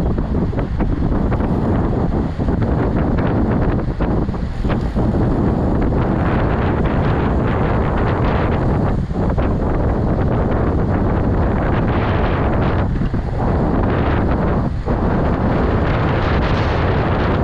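Wind from riding speed rushing over the microphone of a camera on a moving road bike: a steady loud rush, heaviest in the low end, that eases briefly a few times.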